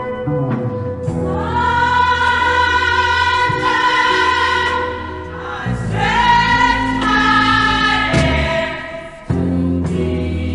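Gospel choir singing two long held phrases over a band accompaniment, each swooping up into its note, about a second in and again just before six seconds. The music dips briefly and comes straight back just after nine seconds.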